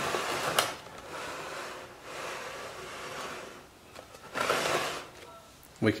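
Cordless circular saw, not running, slid along wooden support strips: its metal base plate scrapes and rubs over the wood in several strokes, with a sharp knock about half a second in.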